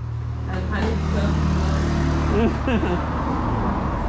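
A motor vehicle's engine running, a steady low hum that swells over the first second and then holds, with faint voices over it.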